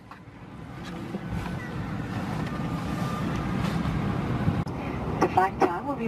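Steady low rumble of an Airbus A320 cabin on the ground, fading in over the first couple of seconds. A cabin PA announcement begins near the end.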